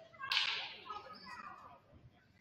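A single sharp smack, such as a basketball being slapped or bounced, echoing through the gymnasium and fading out over about a second.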